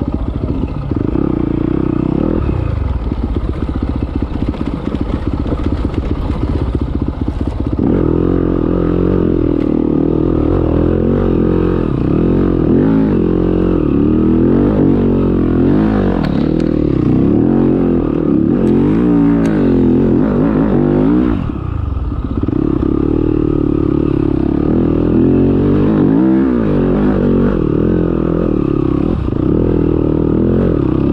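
Yamaha dirt bike engine being ridden on a trail. It runs fairly evenly for the first several seconds, then revs rise and fall again and again as the throttle is opened and shut, with a brief drop-off about two-thirds of the way through.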